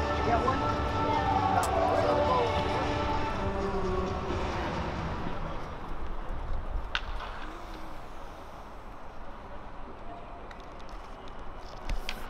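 Music with people talking over it for the first few seconds. It then gives way to a quieter open-air background of faint, distant voices.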